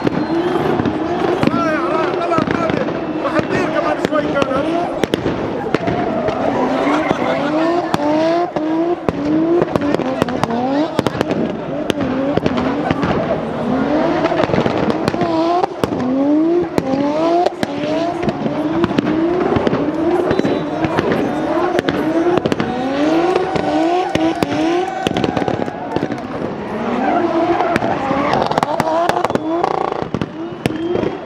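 Turbocharged Toyota 1JZ straight-six in a BMW E36 drift car, revved hard again and again in quick rising sweeps as the car slides, over a constant crackle of sharp pops and tyres squealing.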